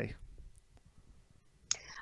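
A pause of near silence after a spoken question. Near the end it is broken by a short mouth click and an intake of breath from the woman about to answer.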